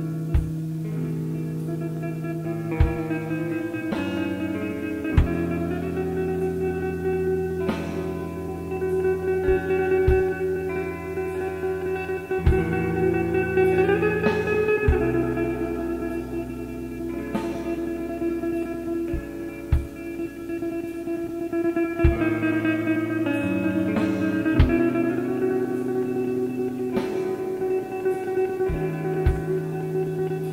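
A slowcore band playing live at a slow tempo: long, ringing guitar chords over held bass notes, changing every few seconds, with sparse sharp hits every two to three seconds.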